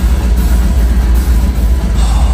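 Live deathcore band playing loud and heavy, with a dense low rumble of down-tuned guitars, bass and drums that does not let up.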